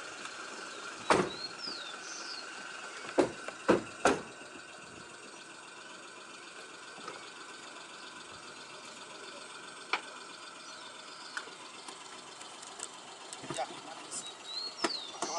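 Car doors of a small hatchback being shut: four sharp thumps in the first four seconds and another near ten seconds. Between them runs a steady quiet hum of the car idling.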